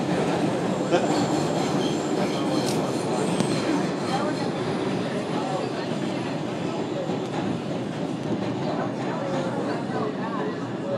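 R142 subway car running through the tunnel, heard from inside: a steady rumble and rattle of the car on the rails with occasional wheel clicks.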